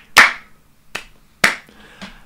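Slow, single hand claps: three sharp claps about half a second apart, the middle one softer, following the announcement of the number-one pick.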